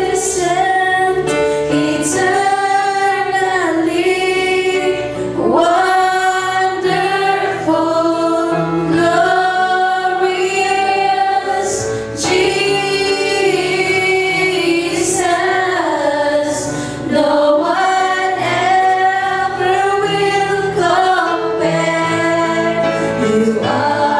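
Women's voices singing a slow Christian worship song, a lead singer with a backing singer, holding long notes and sliding between them. An electric keyboard plays sustained chords and bass notes underneath.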